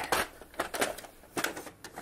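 Paper tray of a laser printer being slid into place, with several short plastic clicks and knocks.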